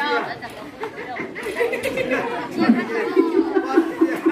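Many children's voices chattering and calling out over one another, the noise of onlookers at a game.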